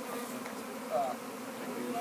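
Honey bees from a swarm buzzing, a steady low hum.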